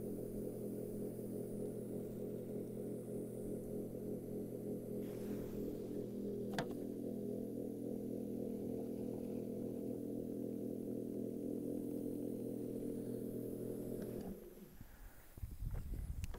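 Electric foam-solution pump of a foam generator running with a steady hum while it primes the line until solution flows out of the wand consistently. One sharp click about six and a half seconds in, and the hum stops about 14 seconds in as the pump is switched off.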